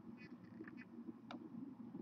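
A few faint computer-mouse clicks over a low, steady room hum.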